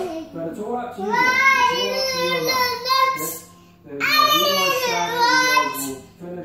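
A young girl singing in two phrases with long held notes, the second starting about four seconds in.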